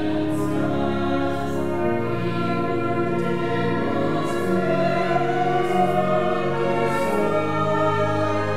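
Church choir singing a hymn arrangement, accompanied by brass, with steady sustained chords.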